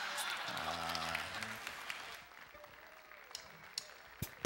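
Audience applauding, dying away by about halfway through, with a few stray claps near the end.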